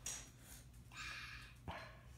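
Two short yelps, the second sharper, a little over half a second apart, after a brief high-pitched hiss at the start.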